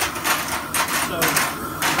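Propane weed-burner torch burning steadily, with metal snap hooks and buckles clinking in a steel pan as they are turned over with a metal rod; the hardware is being heated to burn off its factory coating.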